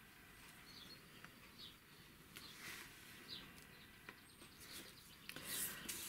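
Faint rubbing and scraping as a plastic palette knife spreads glue medium on a wooden panel and a hand smooths down a pasted paper page, loudest near the end. Faint short bird chirps sound in the background.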